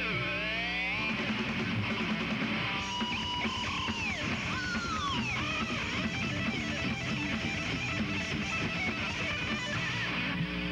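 Heavy metal band playing live: loud distorted electric guitars over bass and drums, with a lead guitar sliding its notes up and down in pitch, no vocals.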